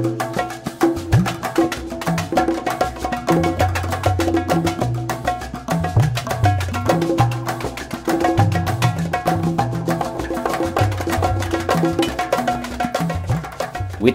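Background music with a quick, steady percussive beat over a moving bass line.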